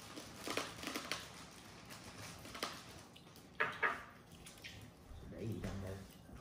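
Scattered light clicks and clinks of chopsticks against bowls and plates while people eat at a table, with a few quiet voices near the end.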